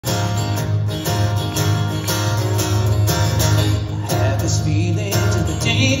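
Acoustic guitar strummed in a steady rhythm, played live; a man's singing voice comes in about four seconds in.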